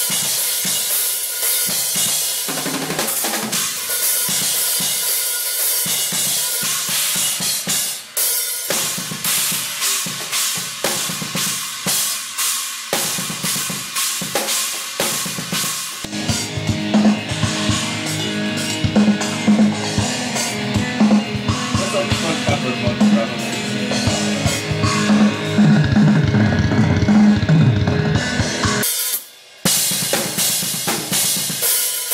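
Yamaha drum kit played fast and hard in a metal style, with rapid kick and snare hits under crashing cymbals. Near the end comes a tom fill falling in pitch, then a brief stop about a second before the end, after which the playing resumes.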